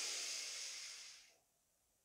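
A woman's long, slow breath in through the nose, close to a headset microphone, fading out just over a second in.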